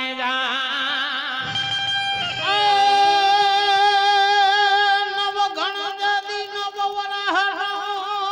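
Live devotional folk singing into a microphone, with instrumental accompaniment: wavering notes at first, then from about two and a half seconds in a long held note with ornamental bends.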